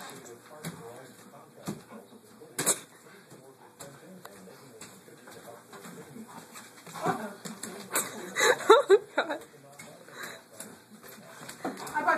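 A dog vocalizing as it tugs on a toy, in a loud run of pitched sounds about seven to nine seconds in. A single sharp knock sounds near three seconds in.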